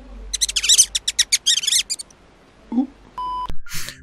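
A quick run of about a dozen high-pitched squeaks in under two seconds. A short steady beep follows near the end.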